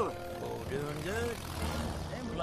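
Small propeller airplane engine running with a steady, noisy drone. A voice is briefly heard over it.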